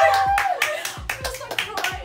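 A run of quick hand claps, about five a second.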